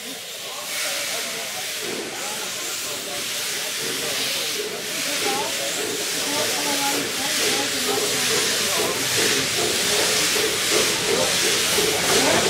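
Kittel-Serpollet steam railcar hissing steam as it pulls slowly away, the hiss swelling in slow, regular pulses.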